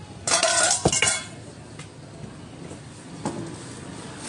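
A brief clatter of metal kitchenware, with a ringing clink, lasting under a second near the start, and a single fainter knock a little after three seconds in.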